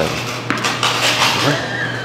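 A sharp knock about half a second in, followed by about a second of clattering, over a steady low hum.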